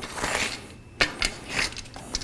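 Rubber inner tube and tyre rubbing and scraping against a Scirocco road-bike wheel rim as the tube is pulled out from under the tyre by hand, with a sharp click about a second in.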